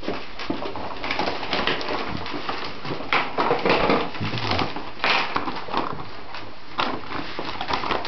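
Rustling and crinkling of gift packaging and boxes being handled and opened, in irregular bursts.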